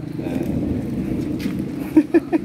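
A steady low hum with indistinct voices in the background, and a couple of faint clicks near the end.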